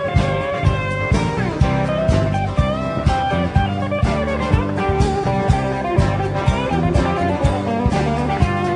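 Live Americana band playing an instrumental break: a drum kit keeping a steady beat under strummed acoustic and electric guitars and a bass line, with a lead line that slides between notes.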